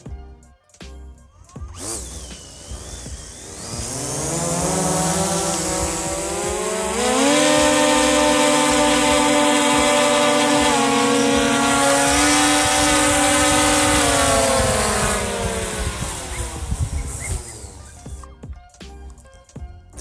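DJI Mavic 2 Pro quadcopter's motors and propellers spinning up into a whine about two seconds in, rising in pitch, then holding high and steady while the drone strains against a 1.5 kg jug of water on a rope that is too heavy for it to lift. The whine falls away again near the end as the motors wind down.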